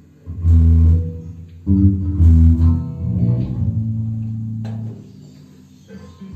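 Electric bass guitar and electric guitar playing live in a band jam: two short, loud phrases of low bass notes, then a long held low note that dies away near the end.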